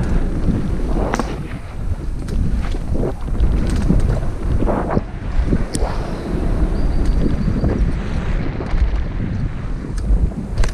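Wind buffeting the microphone of a camera riding on a mountain bike at speed down a dirt downhill trail, with steady knobby-tyre rumble and frequent knocks and rattles from the bike over bumps.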